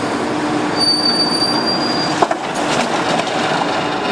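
Hydraulic bin lifter of a rear-loading garbage truck raising and tipping a wheeled bin, a steady mechanical whine with a thin high squeal about a second in. A single knock just after two seconds.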